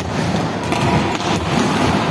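Volleyballs being hit and bouncing on a hard indoor court, scattered thuds echoing in a large hall over a steady din.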